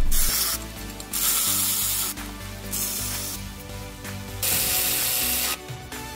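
Power ratchet running in about four short bursts of up to a second each, with background music beneath.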